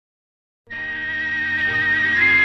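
The orchestral introduction of a 1960 Telugu film song starts suddenly about two thirds of a second in, after silence. A high melodic note is held steadily over lower sustained accompaniment.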